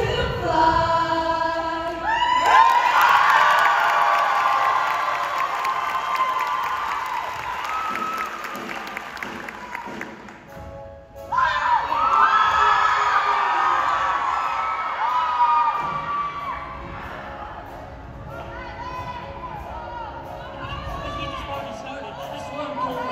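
Audience cheering and screaming for a show choir: the choir is singing at the start, loud cheering breaks out about two seconds in and slowly fades, dips briefly around the middle, then surges again with high shrieks before tapering off.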